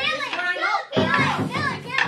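Several children's voices calling out together, overlapping in two loud bursts about a second apart.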